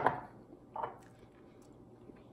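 Quiet handling of a flaky pastry and a jar as the pastry is dipped: a sharp knock right at the start, then a short soft crackle just under a second in.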